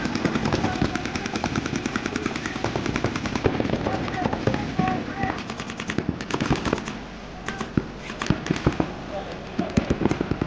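Paintball markers firing rapid strings of shots, many guns overlapping into a dense crackle. The firing thins out briefly about seven seconds in.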